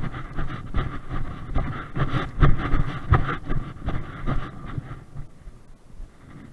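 Footsteps crunching and rustling through rough grass at a brisk walk, about three steps a second, over the rumble of wind on a body-worn camera's microphone. The steps ease off about five seconds in.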